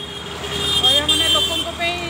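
Road traffic at a busy city junction: vehicle engines running with a steady low hum, and a horn sounding for about a second in the middle.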